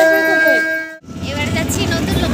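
A long, steady horn tone sounds under women's voices and cuts off abruptly about a second in. It gives way to the engine rumble and wind noise of a moving auto-rickshaw, heard from inside the cabin.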